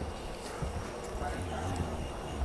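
Footsteps of several people walking along an airport jet bridge's floor, with a few hollow-sounding steps over a steady low hum.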